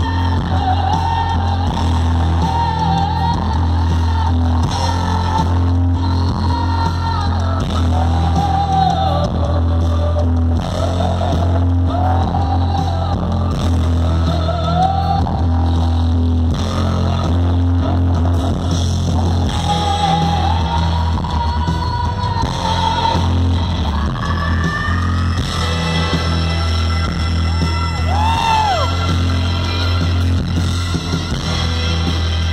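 Live rock band playing loudly, with heavy bass and drums under a wavering melody line, heard from the audience.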